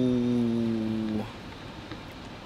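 A man's voice drawing out the word "so" into one long held vowel that slides slowly down in pitch and stops about a second in.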